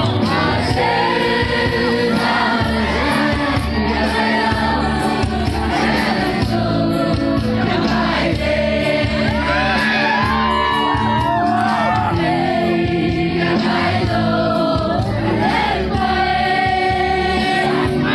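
Male singer performing a Zeme-language love song through a handheld microphone and PA, over amplified backing music with a steady beat, with crowd noise from the audience.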